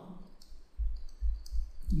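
Clicks and a run of low knocks from a stylus writing on a pen tablet, starting about a second in.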